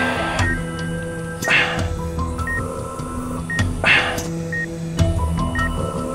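Background score of sustained notes, with a short high beep about once a second, typical of an operating-room patient monitor, and two breathy whooshes about one and a half and four seconds in.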